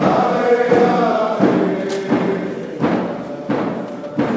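Voices chanting a dance song together over a steady drum beat, about three beats every two seconds, typical of a Northwest Coast First Nations dance song.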